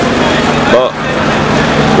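Busy city street: crowd chatter and traffic with a motor vehicle's engine running steadily close by. A man's voice cuts in briefly just under a second in.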